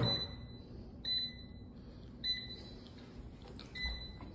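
A sharp knock at the very start, then four short electronic beeps a little over a second apart, each one steady high tone, like a kitchen appliance's beeper.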